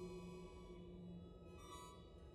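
Symphony orchestra playing a quiet passage of soft, sustained held notes, with a short high ringing note near the end.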